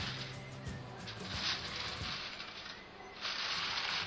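Aluminium foil crinkling in short bursts as it is pressed down and crimped around the rim of a glass baking dish, over soft background music.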